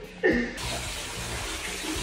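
Water running into a bathtub from the tap, a steady rushing that starts about half a second in.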